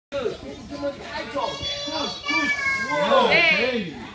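Young children's high-pitched voices squealing and wailing in sliding, wavering tones, loudest in a long wavering cry about three seconds in.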